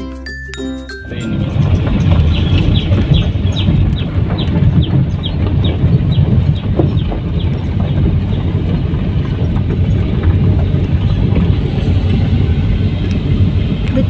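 A short intro jingle with a bell chime ends about a second in. Then a New Holland 8060 combine harvester on half-tracks travels past close by on the road, a loud steady rumble of engine and running gear. A quick run of clicks, about four or five a second, lasts for a few seconds near the start.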